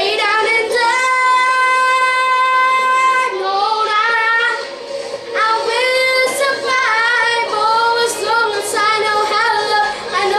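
A boy singing solo, holding one long steady note for about two seconds near the start, then singing further phrases with vibrato after a brief breath.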